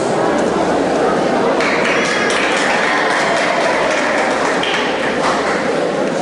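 Voices of stage actors in a hall, several people speaking at once. A higher, brighter sound joins from about one and a half seconds in for about three seconds.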